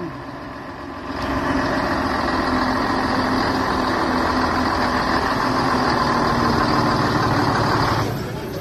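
Leyland OPD2/1 double-decker bus's six-cylinder diesel engine pulling away and approaching. It gets louder about a second in and stays steady as the bus draws close.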